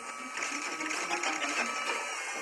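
A steady, rapid mechanical rattle, quieter than the dialogue around it.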